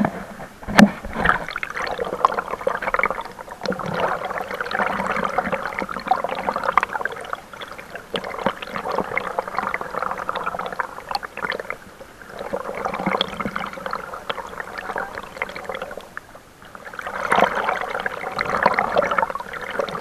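Fast, muddy floodwater of a swollen river rushing and splashing close to the microphone, coming and going in swells. A sharp knock about a second in.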